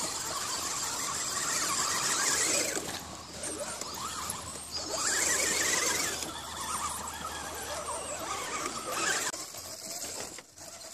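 Electric motors and gear trains of Holmes Hobbies–powered Axial SCX10 radio-controlled crawler trucks whining, the pitch wavering up and down with the throttle. The whine comes in louder spells, about two seconds in and again around five to six seconds in.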